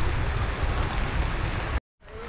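Steady wash of rain and water noise on a flooded street, over a heavy, uneven low rumble. The sound cuts out abruptly near the end.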